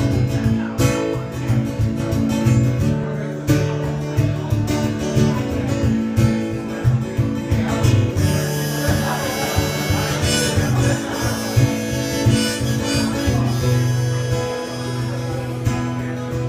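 Live acoustic guitar strummed in a steady rhythm as a song's instrumental intro, with a harmonica joining in about halfway and playing long held notes over the chords.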